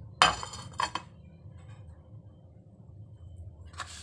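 A loud clatter of kitchen ware just after the start, two lighter knocks about a second in, then a faint low hum, with another knock near the end.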